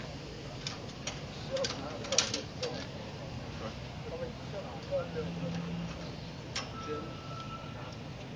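Sharp metallic clicks and clinks of karabiners and harness hardware being handled, mostly in the first three seconds, with one more click over six seconds in, over a steady background hum. A thin steady tone sounds for the last second or so.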